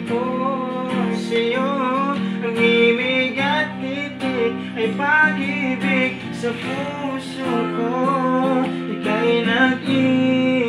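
Acoustic guitar strummed steadily as accompaniment to a man singing a slow song, his voice wavering on held notes.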